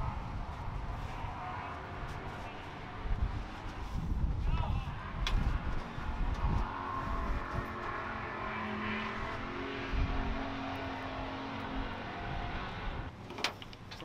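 Low rumble of race car engines running in the background, with a few knocks and rustles as a driver climbs in through a stock car's window and settles into the seat.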